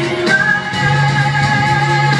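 A pop ballad with a singer's voice over backing music; about a third of a second in, the voice settles into one long held note.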